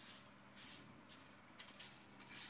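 Near silence, with a few faint, brief scrapes of a spatula stirring dry whole spices in a frying pan.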